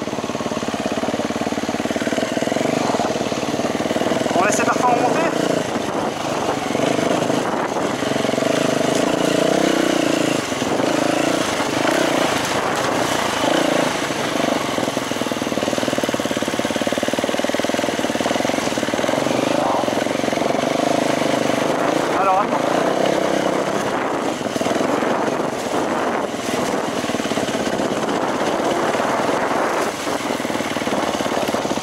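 Enduro dirt bike engine running as it is ridden along a dirt trail, its note rising and falling with the throttle, over a steady rush of wind noise on the microphone.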